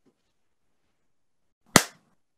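Near silence, broken near the end by a single sharp click.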